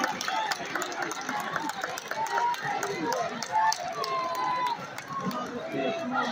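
Crowd chatter at a football game: many overlapping voices in the stands and on the sideline, none of them close, with a few brief raised calls.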